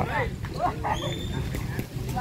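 Background voices of people talking, with a brief high-pitched call about a second in.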